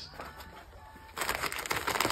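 Plastic comic-book bags crinkling and rustling as a hand flips through a long box of bagged comics, starting about a second in.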